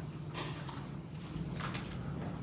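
A few light knocks in two small clusters, the second about a second after the first, over a steady low hum in a quiet room.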